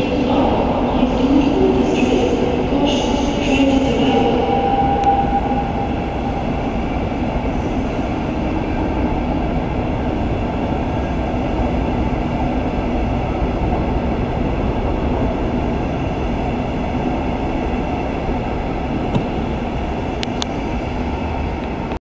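Interregio-Express passenger coaches rolling out of the station at low speed, with a steady rumble of wheels on rails. Some squealing tones and hiss sound over the rumble in the first few seconds. A few sharp clicks come near the end as the last coach clears.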